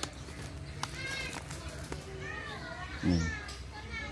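Children's voices calling and playing in the background, with a short low utterance from a man about three seconds in.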